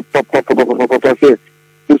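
A person talking in quick, short syllables for about the first second and a half, then a brief pause, over a steady electrical hum.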